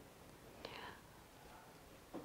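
Near silence: room tone, with one faint short breathy sound from the man a little over half a second in.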